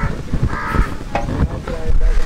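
A crow cawing, with a dull thump near the end.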